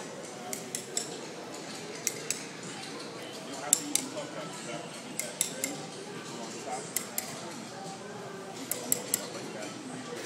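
Scattered sharp clicks and clinks, a dozen or so at uneven spacing, over a steady murmur of indistinct voices.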